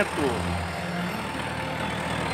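Outdoor street noise with a motor vehicle engine running nearby, a low hum that fades about a second in.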